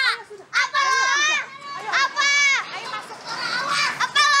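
Young girls shouting and squealing in high-pitched voices, several drawn-out calls one after another, in a taunting exchange.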